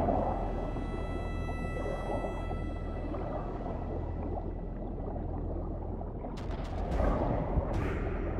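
Muffled underwater ambience from a film soundtrack: a steady low rumble of water with faint, thin high held tones that fade out by about three seconds in. About six seconds in it swells briefly, with a cluster of sharp clicks and crackles, like rising bubbles.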